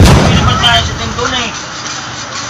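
A loud sudden thump right at the start, with a low rumble that fades over about a second under voices.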